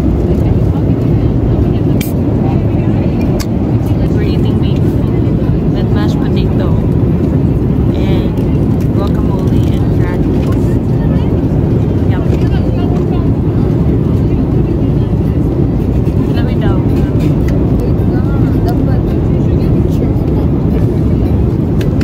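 Jet airliner cabin noise heard from a passenger seat: a loud, steady low rumble, with faint voices now and then.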